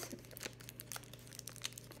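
Hypodermic needle's plastic-and-paper peel pack being pulled open, a run of faint crinkles and crackles.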